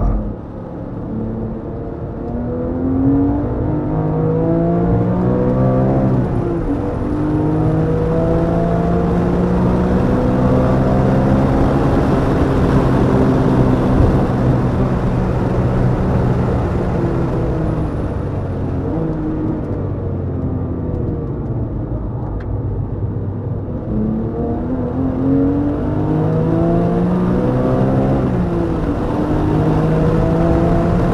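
A Porsche GT3's flat-six engine at full throttle on a race track. The revs climb hard out of a slow corner, drop at an upshift about six seconds in, then hold high. About halfway the pitch falls as the car brakes and slows, and the engine revs up again near the end with another upshift.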